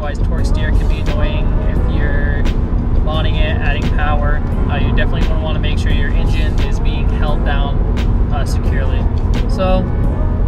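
Steady low road and engine drone inside a moving Mazdaspeed 3's cabin, under a man talking.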